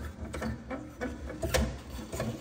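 Factory Lexus scissor jack being cranked down by its hand crank, the screw and linkage turning with a run of mechanical clicks and knocks, the sharpest about one and a half seconds in.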